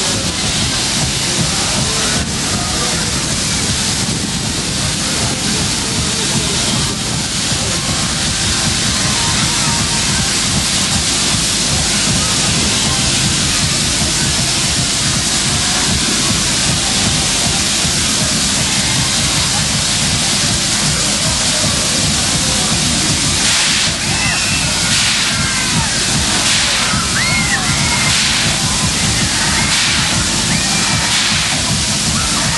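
Loud, steady fairground din around a spinning kiddie ride: a dense wash of noise with music and voices mixed in, and a few short high squeals near the end.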